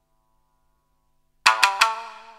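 A pause in the music, then about one and a half seconds in three quick, sharp plucked strikes on a tsugaru shamisen, ringing on after the last.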